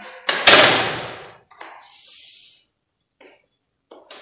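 A loud thump about half a second in, then a short scratchy hiss of chalk drawn along the edge of a plastic set square on a blackboard, with a few faint taps near the end.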